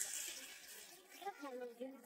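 Faint speech over low background noise in a large hall. A noisy haze fades in the first half-second, and a voice, saying "thank you", comes in during the second half.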